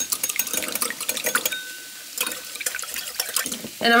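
Small wire whisk stirring a thin soy-sauce mixture in a ceramic bowl: rapid, irregular clicking and scraping of the wires against the bowl, with a brief pause about halfway.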